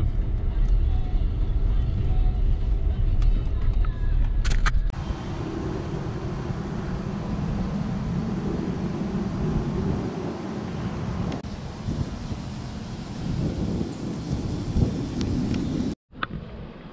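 Low, steady rumble of a car rolling slowly, heard from inside the cabin, with a couple of small knocks; about five seconds in it changes abruptly to a hissy outdoor background noise.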